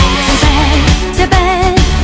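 K-pop song: a sung vocal line with wavering vibrato over a steady beat of drums and bass.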